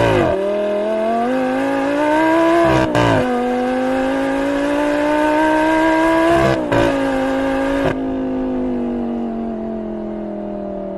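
Lamborghini Gallardo V10 accelerating hard through a valved aftermarket cat-back exhaust, the pitch climbing in each gear with quick upshifts about three and six and a half seconds in. From about eight seconds the note turns duller and steadies, slowly falling.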